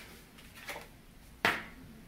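Quiet room tone with one sharp click about one and a half seconds in, as a tarot card is drawn and handled.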